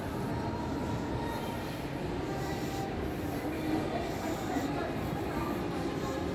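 Steady interior ambience of a shopping mall concourse: a continuous low rumble with faint distant voices.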